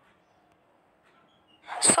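Near silence, a gap in the narration, then a woman's voice starts speaking sharply near the end.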